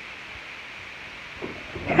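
Quiet room tone with a steady faint hiss; in the last half second a few soft low thuds and rustles come in.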